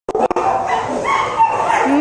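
German Shepherd whining in one continuous high, slightly wavering whine, with two clicks at the very start.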